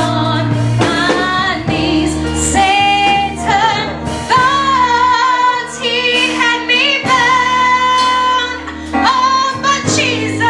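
A young woman singing a slow gospel song into a handheld microphone, holding long notes with vibrato, over steady instrumental accompaniment with low held chords.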